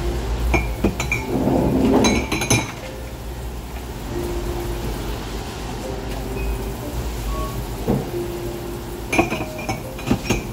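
White ceramic mugs clinking against each other and against a wire dish rack as they are scrubbed with a sponge under a running faucet. A cluster of clinks comes about two seconds in and another near the end, over the steady hiss of running water.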